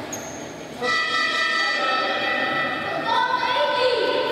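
A horn sounding loudly in a gym: one steady note held for about two seconds, then a second note at a different pitch. A brief high whistle-like tone comes just before it.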